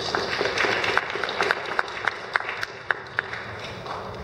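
An audience applauding, with single sharp claps standing out from the crowd's clapping. It thins out and dies away near the end.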